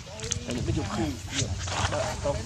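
Indistinct voices, a string of short vocal sounds in quick succession, over a steady low hum.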